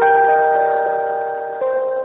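Telephone hold music: a simple electronic melody of sustained keyboard-like notes, thin and cut off at the top as it comes through the phone line, moving to new notes about one and a half seconds in.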